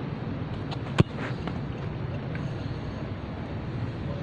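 A football kicked hard with the right foot: one sharp thud of foot on ball about a second in, over a steady low background rumble.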